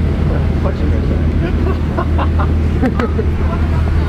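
A car engine idling close by, a steady low rumble, with people talking in the background.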